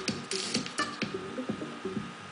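Electronic music with a steady drum-machine beat, played from the clips of an Ableton Live set that is being mixed live from a TouchOSC controller.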